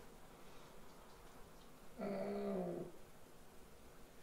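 A quiet room, then about two seconds in a man's short, low hesitation hum ('hmm').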